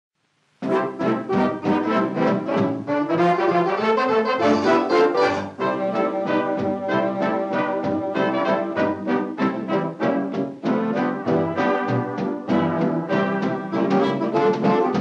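Czechoslovak swing dance orchestra playing the instrumental introduction with brass over a steady dance beat, starting about half a second in after silence.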